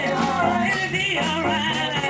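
Gospel praise team singing with instrumental accompaniment, the voices sliding between notes over a steady beat.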